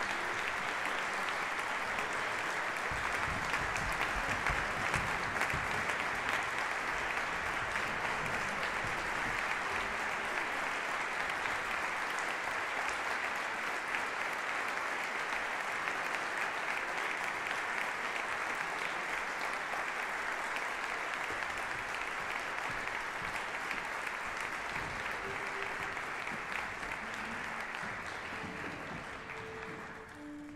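Audience applauding steadily, fading away near the end.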